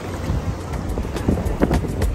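Wind buffeting the phone's microphone over seawater sloshing and splashing close by, with a few short splashes in the second half.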